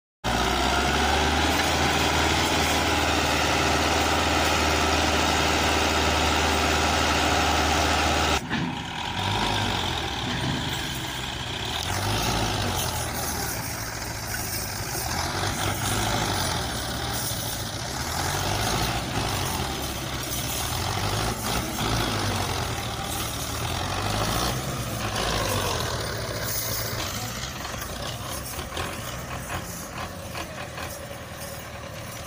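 Belarus 510 tractor's diesel engine running under heavy load. A steady, even note for the first eight seconds cuts off abruptly, and after that the engine's pitch rises and falls again and again as it labours to drag a loaded trolley through mud.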